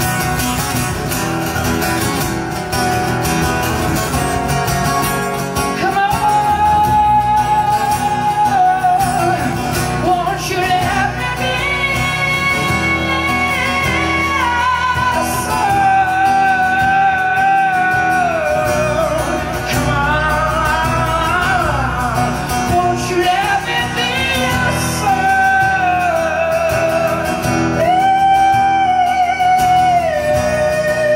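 A man singing long held notes that slide between pitches, over his own strummed acoustic guitar.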